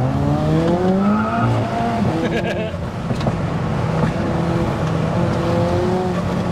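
Turbocharged 2.0-litre four-cylinder engine of a big-turbo MK5 Golf GTI heard from inside the cabin under hard acceleration. Its pitch rises for about a second and a half, drops at a gear change, then climbs again more slowly in the next gear.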